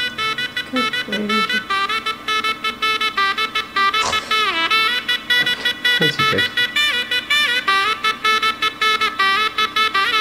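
Shehnai playing a fast, ornamented melody with quick repeated notes and bending slides over a steady drone: the opening of a Bollywood wedding song.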